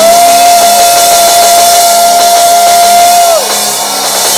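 Loud live church worship music: a single high note is held for about three seconds, sliding up into it at the start and dropping away at the end, over a steady lower chord.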